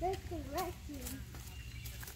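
A short spoken 'ah' in the first second over a steady low rumble, with faint footsteps on a paved path.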